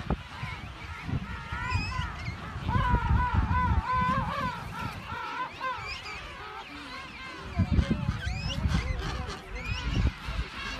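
King penguin colony calling: many overlapping wavering calls, loudest about three to four seconds in and again near eight seconds.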